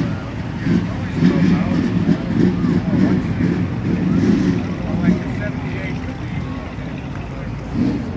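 Wind rumbling on the microphone, with voices of people talking in the background, strongest in the first five seconds.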